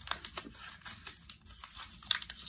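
A crinkly plastic snack wrapper being torn open by hand: a quick run of sharp crackles and rips.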